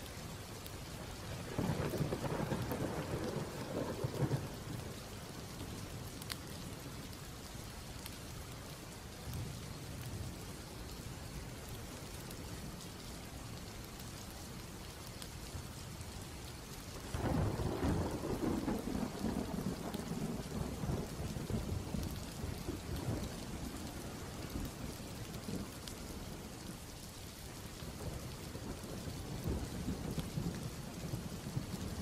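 Steady rain with two rolls of thunder: a short one about two seconds in and a longer one starting just past halfway, trailing off over several seconds.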